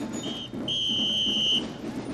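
A shrill whistle blown twice, a short blip and then a steady, level blast of about a second, over background street chatter.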